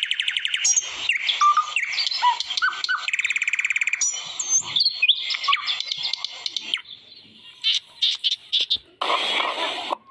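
A chorus of several birds calling at once: overlapping chirps, short whistles and fast rattling trills. The calls thin out to scattered chirps after about seven seconds, and a short, fuller burst of sound comes near the end.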